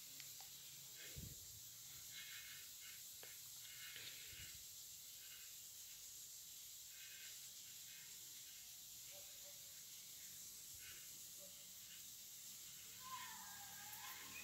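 Near silence: a faint steady hiss with a few faint, brief scrapes of a wooden spoon stirring diced chicken and onion in a non-stick frying pan.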